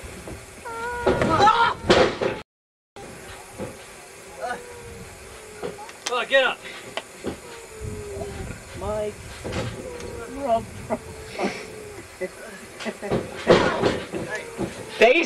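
Indistinct talk from several people, mostly faint, with a few scattered knocks. The sound drops out completely for about half a second, about two and a half seconds in.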